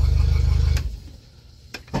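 Pontoon boat's outboard motor idling with a steady low rumble, then shut off about a second in, leaving a lull. A sharp click comes near the end as the ignition key is turned to restart it.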